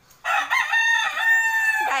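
A rooster crows once nearby: a single loud call of about a second and a half, starting about a quarter second in and holding a steady pitch before breaking off near the end.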